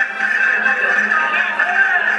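Accordion playing a lively folk dance tune, with held reedy chords under a shifting melody.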